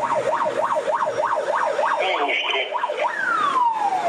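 Fire engine's electronic siren in a fast yelp, rising and falling about four times a second. About three seconds in it changes to one long falling tone.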